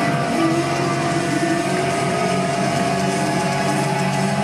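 Loud live hard rock band with distorted electric guitars, playing steady held notes over a dense, continuous wash of sound.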